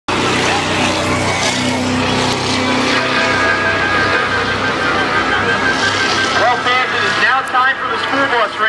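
Engines of vehicles running around a racetrack oval, steady at first, under a wash of crowd noise. A PA announcer's voice comes in near the end.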